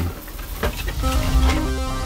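Electronic background music with a pulsing bass beat comes in about a second in. A couple of light clicks are heard from the PS4's plastic cover being handled.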